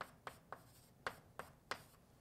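Faint, short strokes of a writing instrument writing out an equation by hand, about six separate strokes over two seconds.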